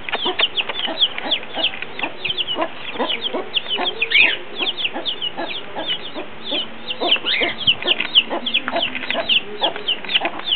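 Chicks peeping constantly, many short high-pitched falling peeps a second, with a hen's lower clucking beneath.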